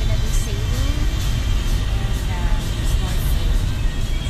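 Steady low rumble of a moving passenger van, heard from inside the cabin.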